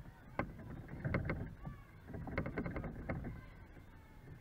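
Wind rumbling on the microphone, with scattered short sharp claps and faint distant voices coming in clusters.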